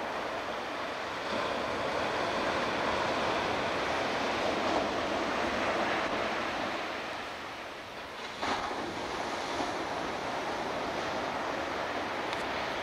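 Ocean surf breaking on a beach, a steady wash that swells louder for a few seconds and then eases, with wind buffeting the microphone.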